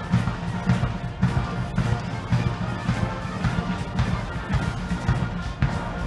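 Military band of guardsmen playing a march, with the drums keeping a steady beat about twice a second.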